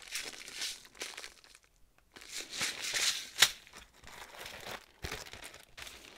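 Clear plastic zip-lock bags crinkling as they are handled, in bursts with a short pause about a second and a half in.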